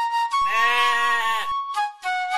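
Flute melody. About half a second in, a bleating animal call lasts about a second over the music.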